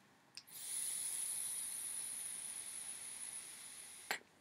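Trident-clone rebuildable dripping atomiser being fired and drawn on: a click, then a steady high hiss of the coil vaporising e-liquid and air pulled through the airflow, lasting about three and a half seconds and slowly fading before stopping abruptly. The coil is running a bit dry for lack of enough wick.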